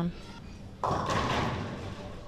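Ten-pin bowling ball striking the pins a little under a second in: a sudden clatter of pins that fades over about a second. It is a hit that leaves the 3, 6 and 10 pins standing.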